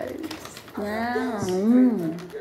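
A woman's closed-mouth "mmm" of enjoyment while eating pizza, starting about a second in and held for just over a second, its pitch rising, dipping and rising again.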